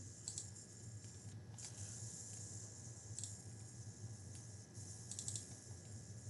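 Faint computer clicks: a few single clicks spaced a second or more apart, then a quick run of clicks near the end, over a steady low electrical hum.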